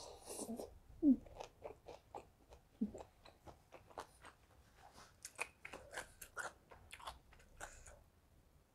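Close-miked chewing of lightly cooked, crunchy vegetables: a quick, irregular run of crisp crunches that gets busier in the second half, with a couple of short low mouth sounds early on.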